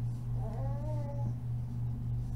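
A baby's short, soft whimper with a wavering pitch, over a steady low hum.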